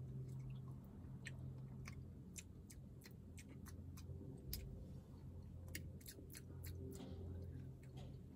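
A person quietly eating an acai bowl with a plastic spoon: chewing and small mouth clicks scattered through, over a steady low hum.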